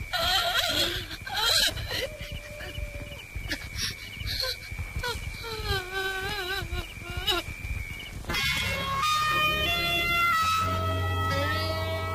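A woman sobbing and wailing in wavering cries over a steady high-pitched tone. About eight seconds in, film score music on plucked strings begins.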